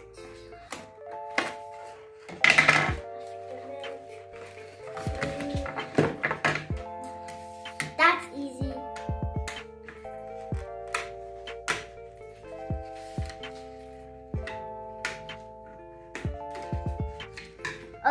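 Background music of held chords that change every second or two. Over it come a child's brief vocal sounds and scattered short clicks of scissors and packaging being handled as a toy figure is cut out of its box.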